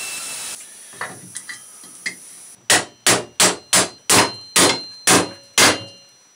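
A pneumatic air tool runs with a steady hiss of air and stops about half a second in. After a few faint clicks, a hammer strikes metal about twice a second, around eight blows, each with a ringing clang.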